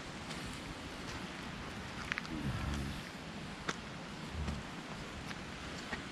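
Steady outdoor noise of wind and drizzle on a handheld camera's microphone, with a few faint clicks. A brief low hum comes about two and a half seconds in.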